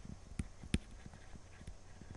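Stylus tapping and clicking on a graphics tablet during handwriting: a few sharp taps in the first second, the loudest about three quarters of a second in, then fainter ticks.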